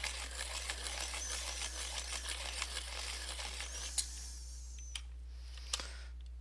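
Pencil sharpener grinding a coloured pencil, crackling and clicking as its brittle, broken core shatters. The grinding stops about three and a half seconds in, followed by a few sharp clicks.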